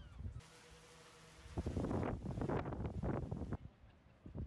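Wind buffeting the microphone in irregular gusts through the second half, over footsteps on a concrete walkway; the sound cuts off abruptly shortly before the end.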